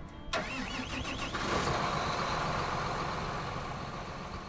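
John Deere row-crop tractor's diesel engine starting: a sudden catch, a wavering whine for about a second, then running steadily.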